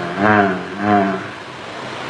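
A man's voice drawing out two long syllables that bend in pitch, the first about half a second long and the second shorter, about a second in.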